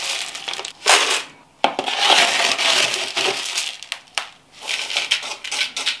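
Loose pon mineral grains in a plastic tub and pot, scooped with a plastic scoop and poured, making a gritty rattling in three loud bursts with short pauses between them. Described as so loud it drowns out talking.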